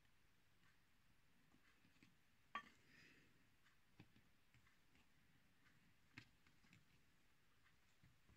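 Near silence with three faint, short clicks spread a second or two apart, from handling the shears and their pivot screw during reassembly.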